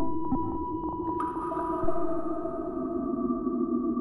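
Eerie electronic drone of several steady, held synthesizer tones, with a few soft clicks just after the start. About a second in, a brighter layer of tones and hiss joins.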